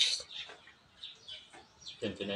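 Birds chirping: short, high, scattered chirps, a few a second.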